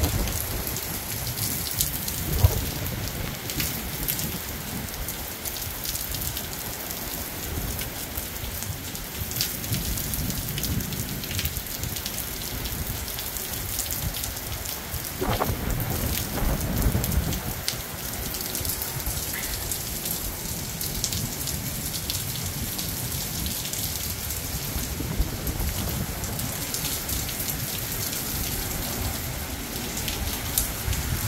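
Steady rain falling hard, with sharp drop hits close to the microphone. A roll of thunder rumbles about halfway through.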